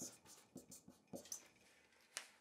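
Faint strokes of a felt-tip marker writing on a sheet of paper, a few short strokes in the first second and a half.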